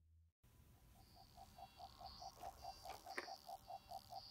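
Near silence, with a faint quick pulsing of about six beats a second.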